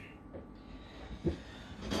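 Soft handling noise of a plastic puzzle cube being moved in the hand: low rubbing and rustling with a couple of faint knocks, the clearest about a second in, over a faint steady hum.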